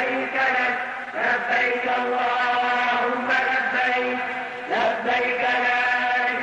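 A man's voice chanting an Arabic nasheed without instruments, in long held notes. A new phrase slides up about a second in and again near five seconds.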